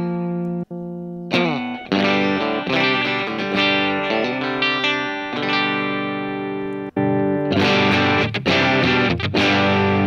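Novo Solus F1 electric guitar with a single Tele-style bridge pickup, played through an amp: ringing chords and riffs, with two brief stops, then harder, brighter strumming in the last couple of seconds.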